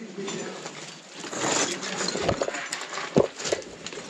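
Footsteps crunching and scuffing over loose rock rubble, with two sharp knocks about two and three seconds in.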